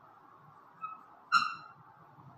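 Chalk squeaking on a blackboard during short drawing strokes: a faint brief squeak just under a second in, then a louder, high-pitched squeak with a sharp start that fades quickly.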